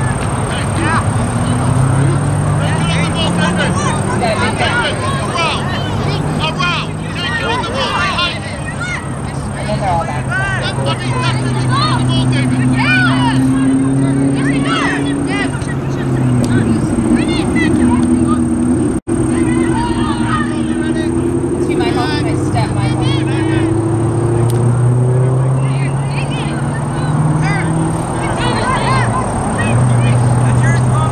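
Field-side sound of a youth soccer game: distant players and spectators calling out, never clear enough to make out words. Beneath them runs a steady low engine hum that slowly drifts up and down in pitch.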